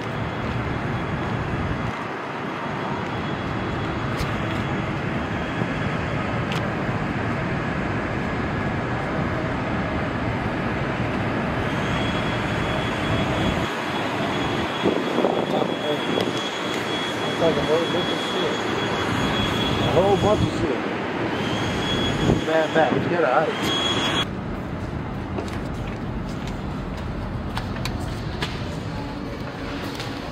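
Steady outdoor city noise on a high rooftop, with distant traffic and a plane-like roar, and voices talking through the middle; about 24 s in the noise drops suddenly and stays lower.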